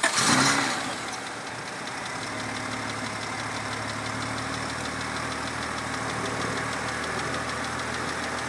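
1995 Honda Accord V6 engine just after starting: a brief flare in the first second, then a steady, very quiet idle.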